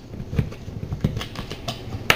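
Plastic screw cap being twisted off a bottle of isopropyl alcohol: a run of small, irregular clicks and ticks.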